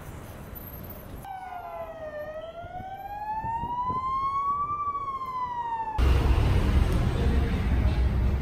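An emergency-vehicle siren wailing in one slow sweep: the pitch dips, rises for about two and a half seconds, then starts to fall. It cuts off suddenly about six seconds in, and a louder low rumble takes its place.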